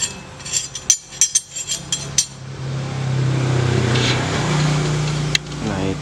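Steel motorcycle rear sprockets clinking and knocking against each other as they are handled, a quick run of sharp clinks over the first two seconds. Then a steady engine hum of a motor vehicle running nearby, stepping up slightly in pitch about four seconds in.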